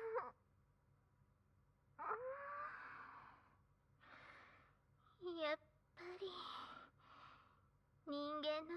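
A woman's breathy sighs and soft moans without words: about five in a row with short pauses between, the first the longest.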